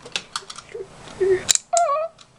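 Light clicks and clatter of a metal-and-plastic Beyblade spinning top being picked up and handled, its parts knocking together in the hand. There are several separate sharp clicks, the loudest about a second and a half in.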